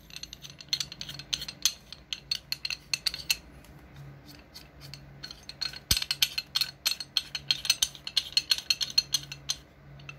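Rapid metallic clicking of an adjustable wrench as its worm screw is spun and the jaw runs open and shut. It comes in two runs, the second louder and starting about six seconds in. A faint steady low hum runs underneath.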